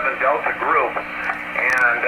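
A man's voice received over a Yaesu FT-225RD 2-metre transceiver and heard through its speaker. The speech sounds thin and narrow, like radio, with a faint steady hum underneath.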